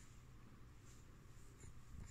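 Near silence: room tone with a low hum and two faint, brief rustles.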